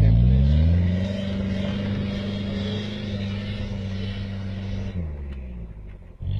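Jeep Cherokee's swapped-in Nissan TD27 four-cylinder diesel revving up under load as it pulls away through deep snow, holding steady high revs, then dropping off about five seconds in.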